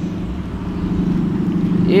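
A car engine idling: a steady low rumble with no change in speed.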